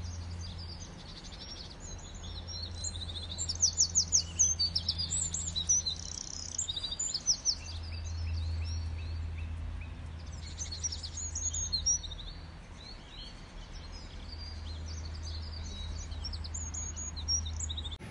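Several small birds chirping and calling in the trees, with quick runs of repeated high chirps about four seconds in and again near twelve seconds, over a low steady hum.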